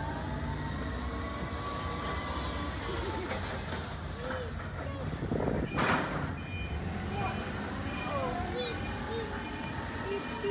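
Alaska Railroad passenger train beside the platform, a steady low rumble with faint drawn-out tones, and a short loud burst of hiss about six seconds in.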